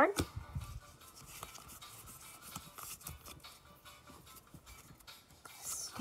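Pokémon trading cards being handled: faint sliding and rubbing of card stock against card stock, with small soft clicks as cards are moved off the stack and set down.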